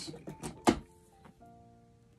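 Cardboard gift box being handled and its lid lifted open: a few short knocks and scrapes, with one sharp knock less than a second in. Soft background music with held notes underneath, clearest near the end.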